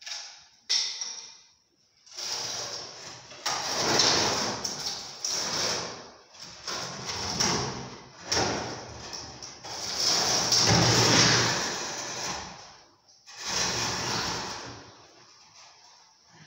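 A wooden staircase dragged and pivoted across a dusty concrete floor: wood scraping on concrete in several long pushes with short pauses between, starting about two seconds in.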